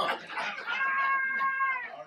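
A person's high-pitched held "ooh" lasting about a second, rising at the start and falling away at the end, as a vocal reaction to the preacher's joke.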